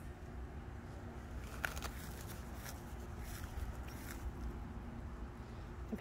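A few soft footsteps and rustles on grass over a low, steady rumble and a faint steady hum.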